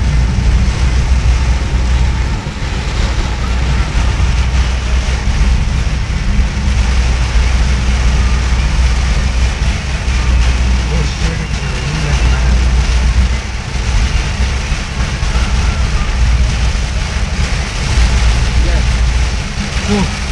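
Inside a car driving through heavy rain on a wet highway: a steady low road and engine rumble under a continuous hiss of rain and tyre spray.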